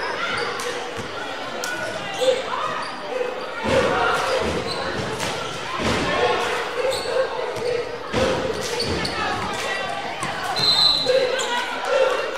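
Echoing sounds of a basketball game in a gym: a basketball thuds on the hardwood floor several times over steady crowd chatter and shouts.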